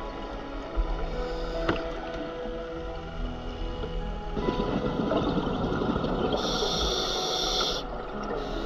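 Background music of sustained held tones. About halfway through, a rushing noise swells for some three seconds, growing brighter and hissier, and cuts off abruptly near the end.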